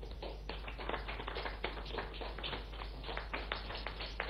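Light, scattered applause from a small group: many quick hand claps at an uneven pace.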